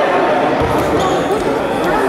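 Voices in a large sports hall, with a dull low thud a little over half a second in.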